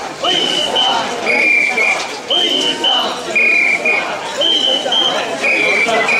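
Mikoshi carriers chanting "wasshoi" in rhythm, with whistles blown to the beat. Each whistle call is a long note then a short one, about once a second, alternating between a higher and a lower whistle.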